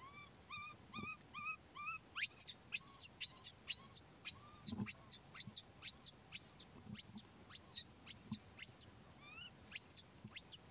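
Baby macaque crying: a run of about five short, slightly rising whimpering cries in the first two seconds, and two more near the end. Between them come many quick high chirps and a few soft thumps.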